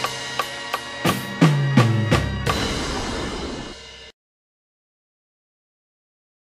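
Acoustic drum kit played to a song, ending on a fill of low hits falling in pitch down the toms and a final struck hit that rings on. The sound cuts off suddenly about four seconds in.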